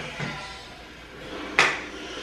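A metal spoon scooping minced garlic out of a plastic jar over a pot, with one sharp clink about one and a half seconds in as the spoon taps against the jar or pot.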